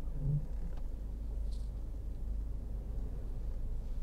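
Steady low rumble inside the cabin of a 2020 MINI Cooper S Countryman, its engine running as the car creeps into a parking manoeuvre. A faint short high tick comes about a second and a half in.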